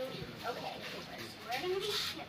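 Indistinct young child's voice, high-pitched and drawn-out, with a rising vocal sound near the end.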